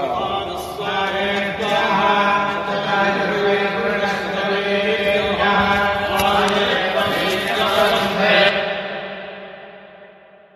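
Devotional chanting sung over a steady drone. The last phrase dies away over the final second and a half.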